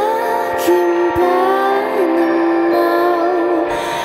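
Experimental pop music: layered sustained chord tones under a slowly wavering melody line, with no lyrics sung here.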